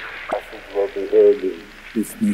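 A voice speaking a short phrase over a faint background, with the music dropped out, as in a spoken sample between songs.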